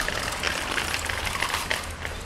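Light metallic clinking and rattling, many quick small ticks, over a low steady rumble; it eases off near the end.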